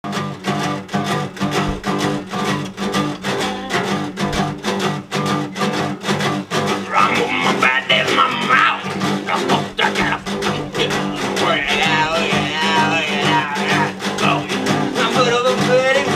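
Three acoustic guitars strummed together in a steady rhythm, an instrumental intro with no singing yet.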